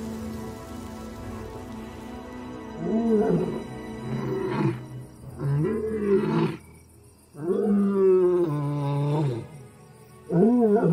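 Male Namib desert lion roaring in a series of calls: three shorter calls starting about three seconds in, then a longer one that falls in pitch near the end. It is a long-distance contact call to his brothers. Soft background music runs underneath.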